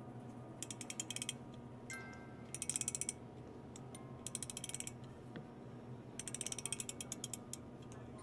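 A ballerina music box being wound by its key: rapid ratchet clicking in four short bursts, with brief faint chiming notes about two seconds in.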